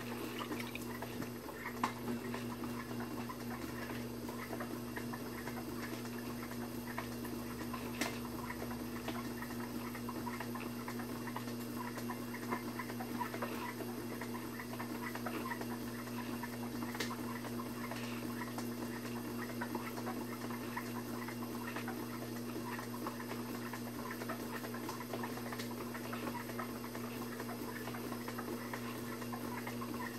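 Electric potter's wheel running with a steady hum while wet hands throw a clay wall, the wet clay and slip giving a constant fine crackle of small squelching ticks, with a few sharper clicks.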